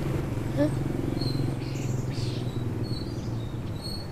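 Outdoor ambience: a steady low hum with a few short, faint bird chirps.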